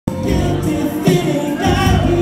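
A man singing a serenade into a handheld microphone over backing music, amplified through the room's sound system.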